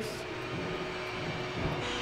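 A steady machine hum with a faint constant tone running through it.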